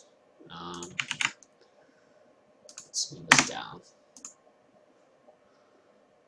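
Computer keyboard typing in short, scattered runs of key clicks with pauses between: code being entered.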